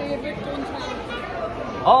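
Overlapping chatter of many diners' voices in a large, busy restaurant dining room, with one voice saying "Oh" near the end.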